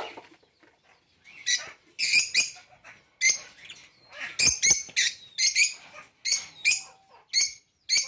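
Lovebirds giving short shrill chirps, one to three at a time, repeated irregularly about every half second to a second.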